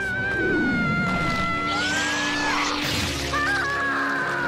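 Dramatic cartoon film score: long wavering high notes held over low sustained notes, with a falling glide about half a second in and a brief rushing noise around the middle.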